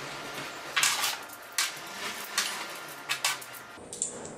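Steel washers and a rod end being handled and stacked together, giving a handful of light metallic clinks about a second apart.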